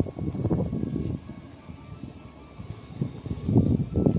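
Background music with a steady light ticking beat, about four ticks a second. Louder low-pitched sounds come in the first second and again near the end, with a quieter stretch between.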